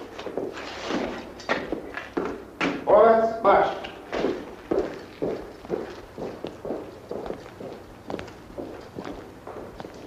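Soldiers' boots marching in step, a steady tramp of about two to three footfalls a second that fades away, following a shouted German drill command.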